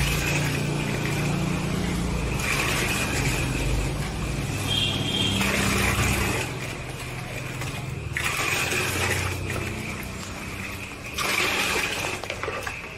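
Water poured from a plastic mug into a plastic bucket of water several times, splashing and gushing with each pour, as a water sanitizer is mixed in by hand. A low steady hum runs underneath.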